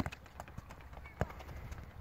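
A football being kicked and bouncing on asphalt: a few sharp thuds, one right at the start and another about a second in.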